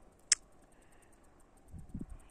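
A single short, sharp high-pitched click about a third of a second in. Otherwise quiet, with a faint, rapid high ticking.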